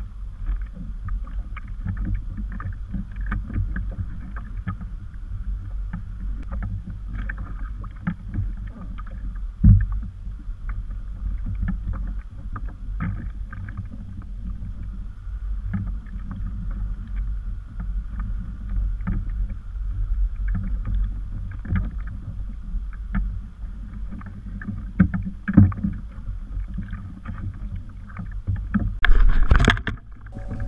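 Wind rumbling on the microphone and small waves lapping against a kayak hull, with scattered knocks of gear being handled on the deck. There is a louder thump about ten seconds in and a clatter near the end.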